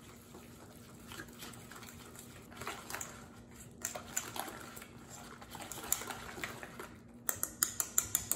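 Wire whisk beating a thick yogurt marinade in a stainless steel bowl: soft wet swishing with light clicks of the wires against the metal, turning to sharper taps near the end.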